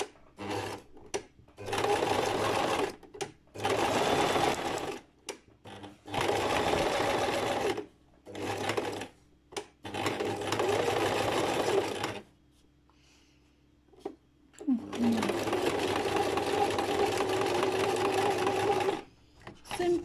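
Domestic electric sewing machine zigzag-stitching around paper envelopes. It runs in six stop-start bursts of one to four seconds, with a longer pause after the middle, and the longest run comes near the end.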